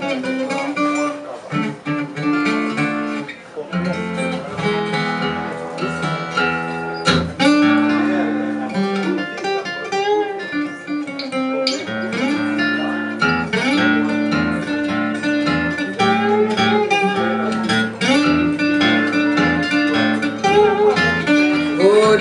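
Solo acoustic guitar picked in a traditional blues style, with repeated bass notes under a higher picked melody: the instrumental introduction before the singing comes in.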